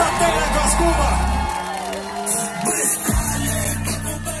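Live rock band playing loudly through a festival PA, recorded on a phone from within the audience, with fans whooping and yelling over the music.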